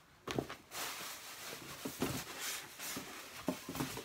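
Rustling of packaging with light clicks and knocks from the plastic mini fridge and its box being handled while the power cord is searched for.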